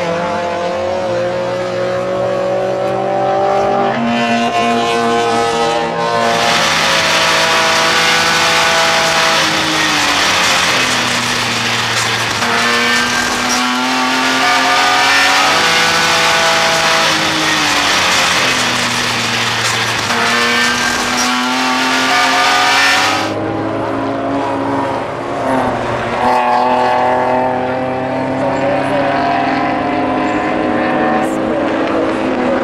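Drift cars, a Mazda MX-5 and a Nissan Silvia, revving hard in tandem, their engine notes repeatedly climbing and dropping as the throttle is worked, with tyre squeal. A louder, hissier stretch from about six seconds in cuts off suddenly a few seconds before the end.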